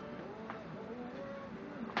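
Paper towel rubbing a sheet of paper pressed down onto an inked fish for a gyotaku print, with a light click about half a second in and a sharper click near the end.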